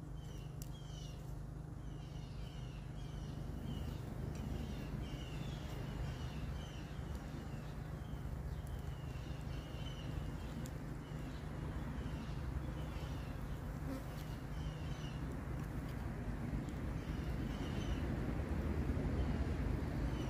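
Flies buzzing close by with a steady low hum, while a high, rapid chirping repeats in the background.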